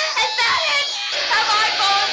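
A high-pitched, child-like voice singing or speaking in short, wavering phrases as the opening of a punk track, with a low steady hum coming in about a second in.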